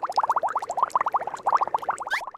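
Cartoon underwater bubbling sound effect: a rapid stream of short rising blips, about ten a second.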